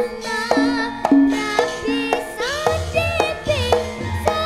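Live Javanese gamelan music: bronze metallophones and gongs struck in a steady pattern with drum strokes underneath, while a young girl sings a melody with vibrato into a microphone.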